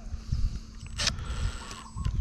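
Handling clicks and knocks from the opened Stanley FatMax tape measure as its plastic tape reel is seated back onto the square nub in the housing, with a sharp click about a second in; the cordless drill that wound the spring is stopped.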